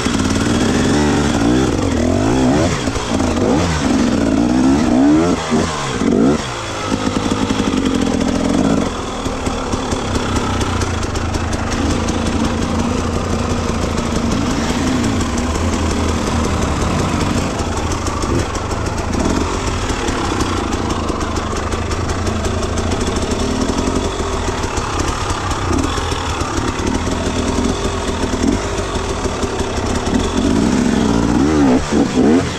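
Dirt bike engine revving up and down repeatedly over the first several seconds as the bike is ridden over rough, rocky trail, then running at a steadier low throttle with a few brief blips of revs.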